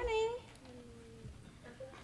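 A small child's short high-pitched vocal sound, rising in pitch, at the very start, then a fainter held tone and quiet room sound.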